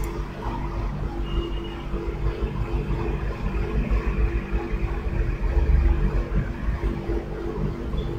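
Steady low mechanical hum over a rumble, with a faint short high tone about a second in.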